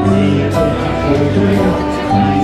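Live acoustic country band playing: strummed acoustic guitars and a fiddle over keyboard and a steady low bass, with held notes and chord changes.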